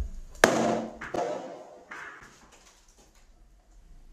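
A rubber balloon bursting over a burning match in a glass: one sharp, loud bang about half a second in, followed by a smaller knock about a second in.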